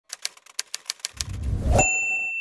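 Typewriter: a quick run of key clicks, then a low swell building into a bright bell ding near the end whose ring holds on.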